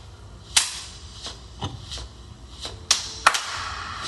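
Sharp, irregular slaps of hand percussion, about five in all. The loudest comes about half a second in, and two more come close together near the three-second mark.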